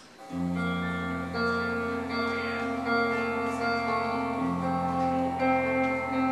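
A live band's instrumental song intro starts about a third of a second in: a steady held low bass note with guitar notes layered above it, the chords shifting every second or so.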